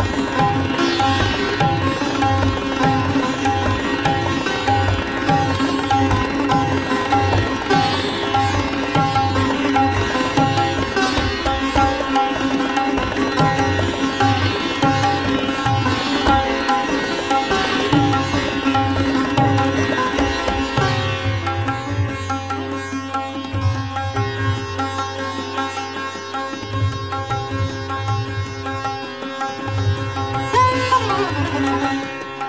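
Sitar playing a fast drut gat in Raag Puriya, set in teentaal, with tabla strokes keeping the rhythm underneath; the low drum strokes thin out for a few seconds past the twenty-second mark.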